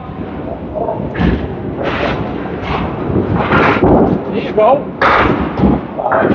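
Candlepin bowling: small balls rolling on the wooden lanes with a low rumble, and several sudden crashes of balls hitting the wooden pins and the pit. Voices murmur in the background.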